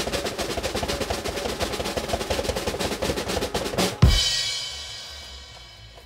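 Snare drum roll of rapid even strokes lasting about four seconds, ending in a loud crash that rings out and fades away.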